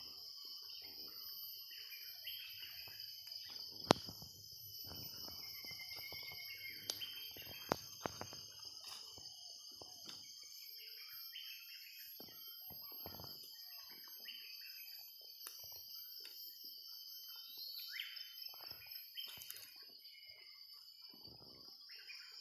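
Insects making a steady high drone, with scattered bird chirps, one rising call near the end. Sharp crackles of footsteps on dry leaf litter come now and then, with a louder snap about four seconds in.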